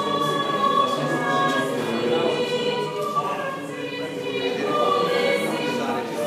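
Choral singing: several voices holding long, overlapping notes that shift in pitch every second or so.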